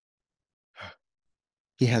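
Dead silence broken about a second in by a man's single short breath, with his speech starting near the end.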